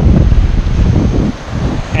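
Wind buffeting the camera's microphone: a loud, gusty low rumble that rises and falls, easing for a moment a little past the middle.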